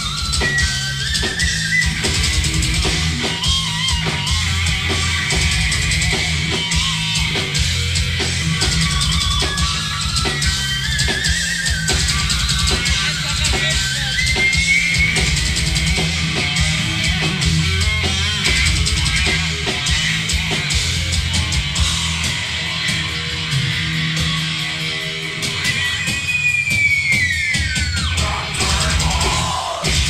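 Groove metal band playing live without vocals: electric guitar riffing over bass and drum kit. Near the end the guitar's pitch drops in a long falling dive.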